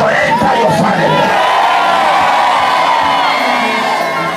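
A congregation of many voices shouting and crying out together in a loud, sustained din.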